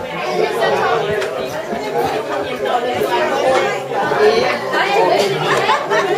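Many people talking at once, overlapping voices with no single one clear.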